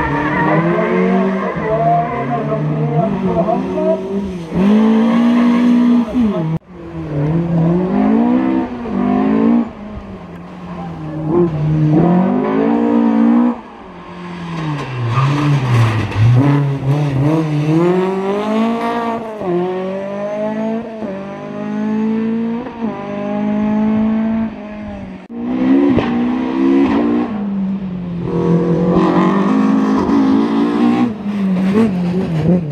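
Rally cars, among them Volvo 240s, accelerating hard past at full throttle, engine pitch climbing and dropping again and again with each gear change and lift. Several cars follow one another, with abrupt breaks between them.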